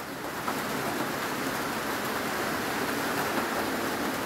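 Steady rain falling, heard from under a corrugated metal roof: an even hiss.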